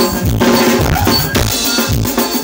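Live band music, likely ohangla, from electronic keyboards over a steady, fast drum beat with bright, cowbell-like percussion, and a bright hissing wash near the end.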